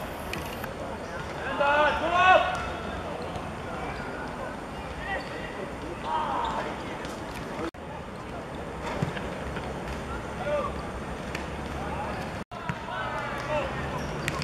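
Voices shouting on a football pitch during play, short calls in bursts, over a steady outdoor background hum. The sound drops out briefly twice where clips are joined.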